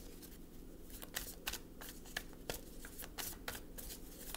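A tarot deck being shuffled by hand: a run of quick, irregular card slaps and riffles, starting about a second in.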